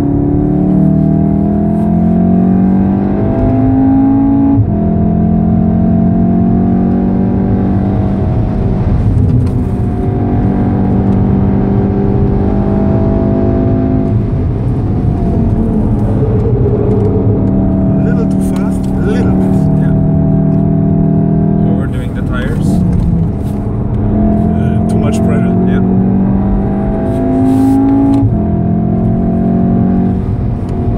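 A 2014 VW Golf 7 R's 2.0-litre turbocharged four-cylinder engine heard from inside the cabin, pulling hard on the throttle. Its note climbs steadily in pitch and then drops suddenly several times as the revs fall back. Steady tyre and road rumble runs beneath it.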